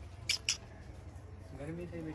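A young baby vocalizing softly: two short lip-smacking clicks, then a brief coo that rises and falls near the end.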